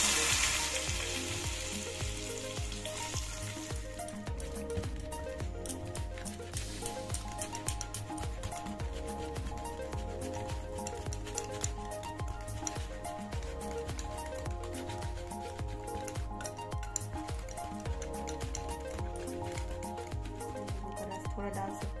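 Hot mustard oil poured from a ladle onto a yogurt-and-spice marinade, sizzling loudly at first and dying away over about three seconds. After that a wire whisk beats the marinade in a ceramic bowl with light clicks against the sides, under background music.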